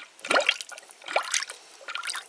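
Engine coolant gurgling in a filler funnel on the radiator, a few short bubbling glugs as trapped air bubbles up out of a cooling system that has run low.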